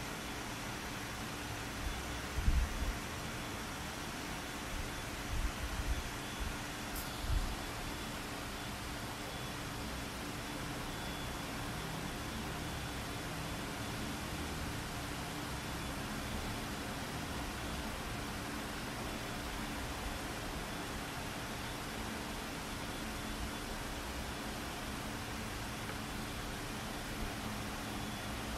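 Steady hiss of an open microphone's background noise, with no speech. A few short low thumps break it, the loudest about two and a half seconds in and several more between five and seven and a half seconds.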